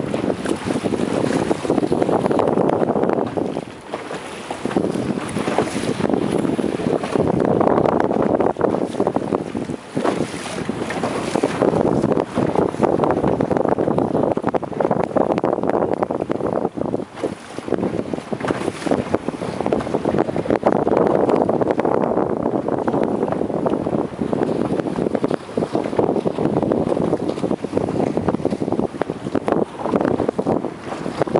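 Wind buffeting the microphone in gusts over water rushing and slapping along the hull of a small sailing dinghy under way in choppy water.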